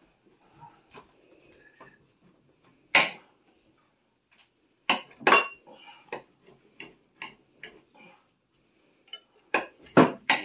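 Knife and fork clinking and scraping against a ceramic platter as a beef roast is carved: scattered sharp knocks with quiet gaps between them, the loudest about three seconds in and a quick pair near five seconds.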